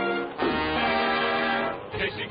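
Orchestral cartoon score: a full held chord that shifts to a new chord about half a second in and is sustained until near the end.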